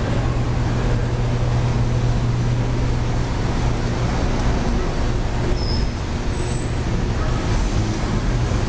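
Steady city street noise: traffic rumble with a strong low hum that weakens about six seconds in.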